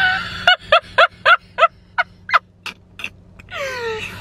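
A woman laughing in short, evenly spaced pulses, about four a second, then a longer falling vocal sound like a sigh near the end.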